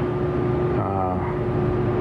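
A man's voice briefly, about a second in, over a steady low hum with a faint held tone underneath.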